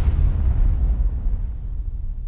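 Deep cinematic boom of a logo-reveal sound effect, its low rumble slowly dying away.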